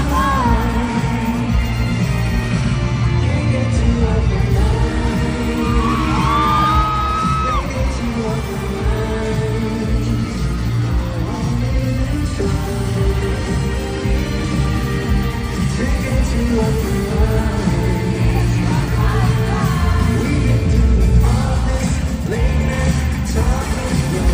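A live pop band playing in an arena, with a male lead singer singing into a handheld microphone over a strong bass and drums. It is heard from within the audience.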